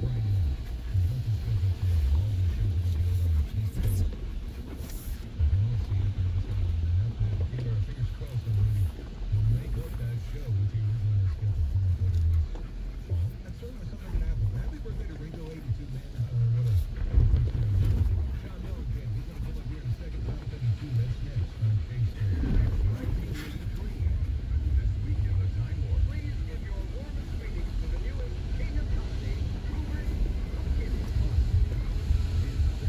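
Low, uneven rumble of a Jeep Gladiator pickup crawling slowly over a rocky trail, heard from inside the cab.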